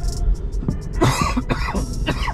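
A man coughing about a second in, over the steady low rumble of a moving car's cabin.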